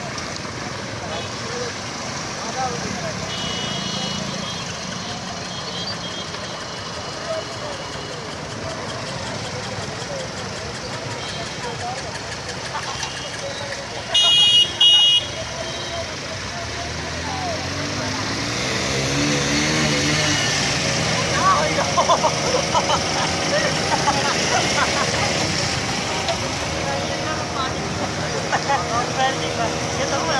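Road traffic with motorcycle and car engines running and people's voices. About halfway through, a vehicle horn sounds two short beeps.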